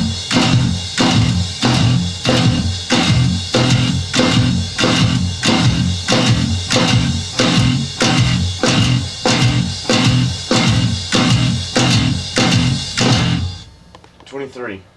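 Electric bass guitar and drum kit playing hard together: an even, pounding beat of about two hits a second, with low bass notes under each hit, stopping abruptly shortly before the end.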